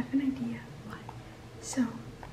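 A woman's soft wordless voice sounds: a short low hum falling in pitch at the start, then a whispered, breathy hiss near the end.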